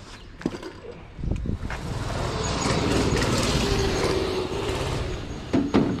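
A motor vehicle passing on the street: its sound swells about a second in, holds, and falls away near the end. A couple of sharp knocks near the end come from items being handled.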